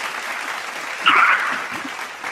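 A steady, noisy hiss of the kind applause or rustling makes, coming over a video-call line. There is a louder rush of noise about a second in.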